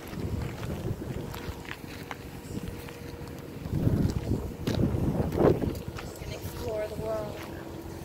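Wind buffeting a phone microphone in low rumbling gusts, strongest in the middle, with faint voices talking in the background near the end.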